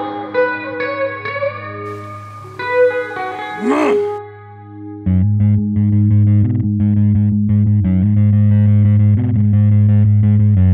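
Alternative rock band music: an electric guitar through effects plays held notes with sweeping pitch slides, then about five seconds in the full song comes in loudly with distorted electric guitar chords and a driving Hofner bass line in a steady rhythm.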